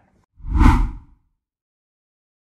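A single whoosh transition sound effect, under a second long, with a deep boom under it.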